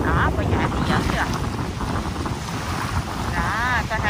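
Strong sea wind buffeting the microphone in a steady low rumble, with surf behind it. A few short voice-like sounds cut through, the longest rising and falling in pitch near the end.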